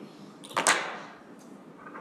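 A sharp knock in a room: a faint click just under half a second in, then a louder hit a moment later that fades out quickly.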